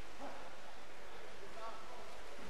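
Brief distant shouts from people, twice, over a steady background hiss.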